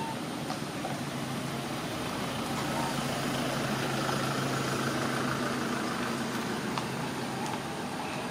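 A motor vehicle's engine running steadily, growing louder toward the middle and easing off again, like a vehicle idling or passing slowly.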